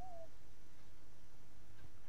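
Steady low electrical hum and faint hiss from the sound system, with a brief faint chirp at the very start.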